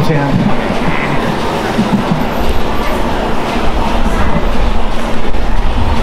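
Loud, steady low rumble with a hiss above it, with faint voices mixed in.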